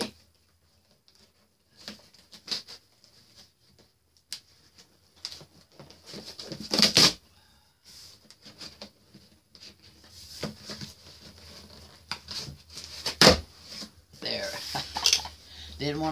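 Large cardboard box being worked open by hand: tape and flaps being cut and pried, with scattered rustling and clicking and two sharp, loud cracks about seven and thirteen seconds in.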